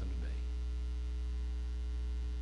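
Low, steady electrical mains hum on the recording, with no other sound after the tail of a spoken word fades near the start.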